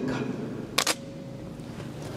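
A pause in a sermon: the voice's echo fades in a large hall, and about a second in there is a single brief sharp click over steady room tone.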